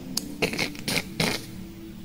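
Several short scraping, rustling strokes close to a clip-on lapel microphone, the sound of a sweater rubbing against the mic as the wearer gestures with his hands.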